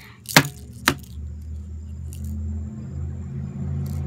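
Plastic fashion dolls knocked against each other: two sharp clacks within the first second, followed by a steady low hum.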